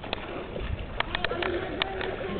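A dove cooing, with several sharp clicks in the second half.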